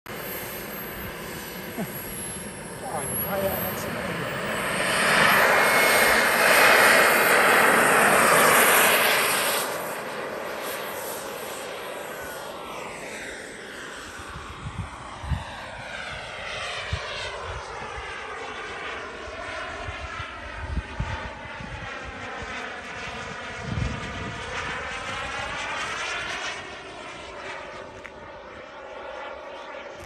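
Kingtech K102 model jet turbine in an RC Mirage 2000 running with a high whine that rises a few seconds in. It gets loud from about five to nine seconds in, then fades to a distant jet rush with a sweeping, whooshing tone as the model flies away.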